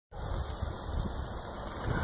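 Background noise: an uneven low rumble under a steady hiss, the kind that wind buffeting the microphone or distant traffic makes.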